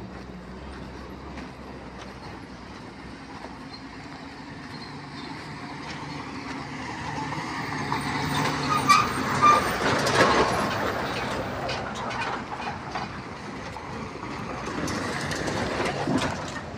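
Diesel goods truck approaching along a dirt road and passing close by. Its engine and rattling body grow louder, peak about nine to ten seconds in with some clattering, then fade away.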